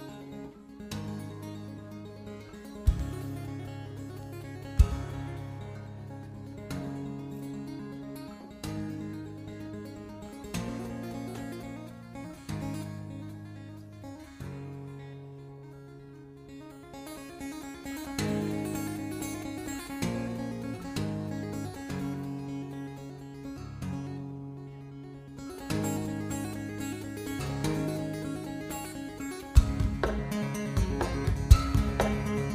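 Solo steel-string acoustic guitar played with two-handed tapping on the fretboard, notes ringing and overlapping in an instrumental piece. Two sharp knocks come a few seconds in, and another near the end.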